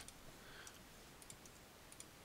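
Near silence with a few faint computer clicks as anchor points are selected in drawing software.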